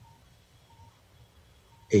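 Near silence with faint, thin, intermittent high tones, then a man's voice begins just before the end.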